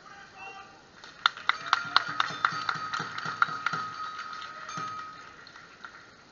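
A small metal percussion instrument, like a gong or bell, struck quickly about four times a second from just over a second in. Each stroke rings at the same clear pitch, and the ringing dies away after the strokes stop.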